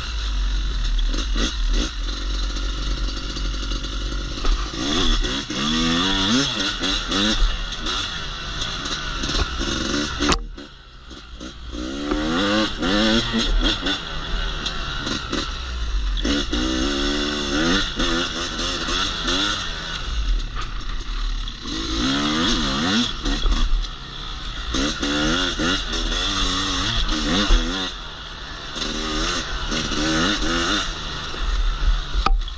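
Yamaha YZ250X two-stroke single-cylinder dirt bike engine being ridden, its note rising and falling over and over as the throttle is worked, with a brief drop-off about ten seconds in.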